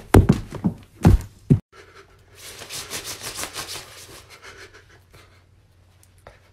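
Several loud thumps in the first second and a half, then a rustling, scraping noise for about two seconds that fades out.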